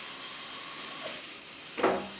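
VEX V5 motor-driven flywheel launcher and intake running with a steady whirring hiss, and a single short, sharp hit near the end as a disc is fed in and launched by the spinning wheel.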